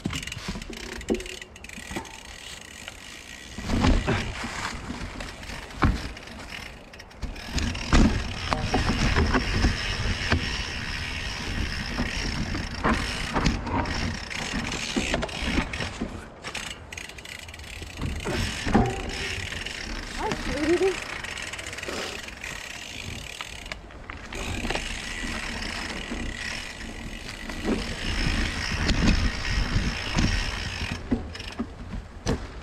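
Mountain bikes riding over a rocky forest trail thick with dry leaves: tyres rolling and crunching through the leaves, with frequent knocks and rattles from the bikes over rocks and roots, over a constant low rumble.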